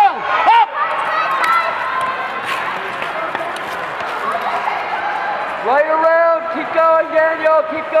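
Rink background noise while skaters race, then from about six seconds in a voice shouting four long, drawn-out cheers in quick succession.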